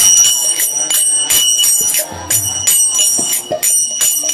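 Kirtan instruments playing between sung verses: small brass hand cymbals (karatals) struck in a steady rhythm, about three ringing clashes a second, with a hand drum beating underneath in the second half.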